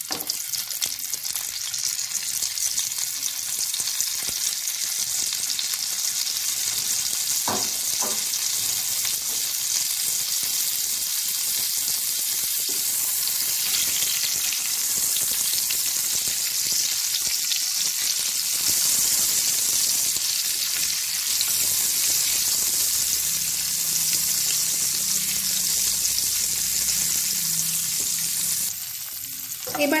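Whole boiled eggs frying in hot oil in a non-stick pan: a steady, bright sizzle, with two light knocks about seven and eight seconds in.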